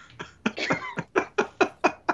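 Male laughter: a run of short bursts, about five a second, that stops near the end.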